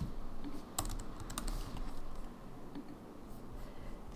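Typing on a computer keyboard: a handful of separate, sparse keystrokes, the sharpest about a second in.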